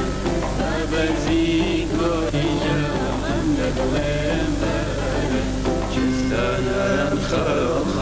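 Kurdish folk music played by an ensemble, with an oud among the plucked strings, running without a break.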